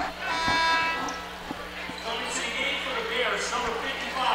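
Arena scorer's-table horn sounds once, a steady buzz for about a second, signalling a substitution during the foul stoppage. The gym crowd's murmur carries on after it.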